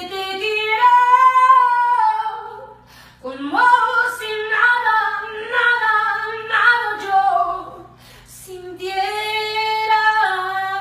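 A woman singing unaccompanied, long held wordless notes with vibrato in three phrases, the middle one the longest and climbing in pitch.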